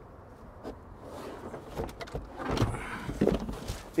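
Third-row seat of a Toyota Sienna minivan being folded down by hand: a few latch clicks about halfway through, then soft thumps and rustling as the seat moves.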